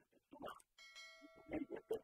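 A bell-like chime: one steady ringing tone with several overtones that starts a little under a second in and fades over about a second and a half, with faint talk around it.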